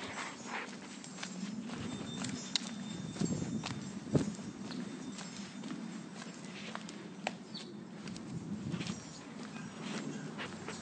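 Footsteps of someone walking on a paved street, irregular clicks over a low steady rumble, mixed with the handling noise of a handheld phone.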